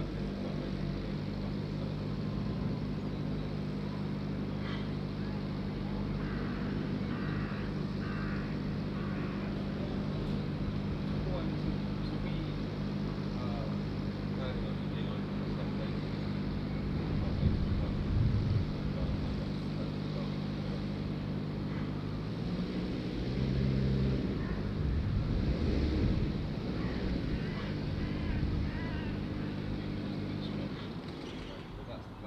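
Urban ambience held by a steady low hum from an idling engine. Indistinct voices sit over it and grow louder briefly a little over halfway through and again toward the end.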